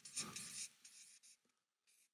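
Marker pen writing on flip-chart paper: a few faint short strokes, dying away after about a second into near silence.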